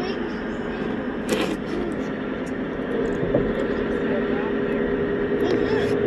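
Steady drone of a boat's engine with a constant low hum, over an even rush of noise, with faint indistinct voices in the background.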